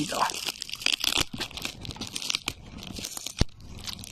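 A cardboard box used as a temporary pigeon carrier being torn and crumpled open by hand: irregular crackles and crunches, with one sharp snap about three and a half seconds in.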